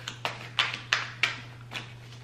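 A deck of tarot cards being shuffled by hand, the cards slapping together in about five short, sharp taps.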